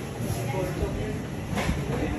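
Indistinct voices over a steady low rumbling hum of shop background noise, with one short sharp click about one and a half seconds in.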